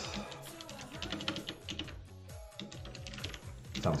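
A run of quick keystrokes on a computer keyboard, with music playing quietly underneath.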